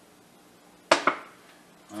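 Quiet, then about a second in a sharp click followed closely by a lighter one as the plastic squeeze bottle of Dawn dish soap is handled after dosing the tumbler drum.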